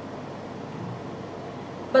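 Steady room noise in a conference hall with no speech: an even, featureless hiss.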